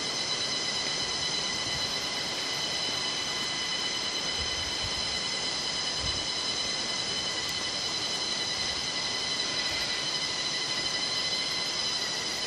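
Steady, high-pitched chorus of insects in the surrounding forest, several shrill pitches held without a break, with a few soft low thumps around the middle.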